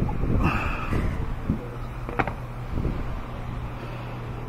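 Car battery being slid forward and lifted out of its tray, scraping and knocking, with one sharp knock about two seconds in, over a steady low hum.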